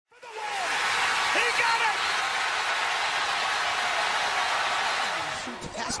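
Steady loud crowd noise, cheering with shouting voices in it, fading out about five and a half seconds in.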